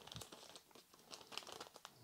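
Faint crinkling and light clicks of a white foam booby-eye piece being handled and trimmed round to shape a smooth fly head.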